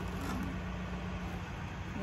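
A steady low mechanical hum, like a motor running, with no change in pitch or level.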